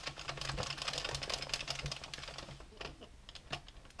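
Addi Professional 22-needle knitting machine being hand-cranked: a fast run of light plastic clicking as the needles ride round through the cam. The clicking is densest in the first two and a half seconds, then thins out.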